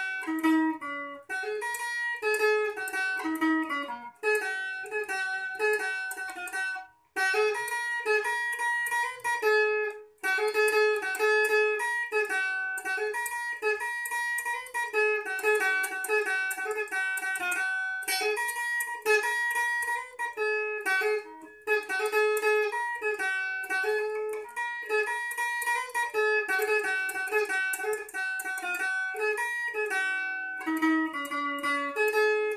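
Stratocaster-style electric guitar playing a single-note lead solo: a continuous run of picked notes in the upper register, with two brief breaks about seven and ten seconds in.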